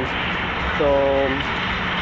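Steady outdoor street background noise, even in level, with a man saying a single word, "So," about a second in.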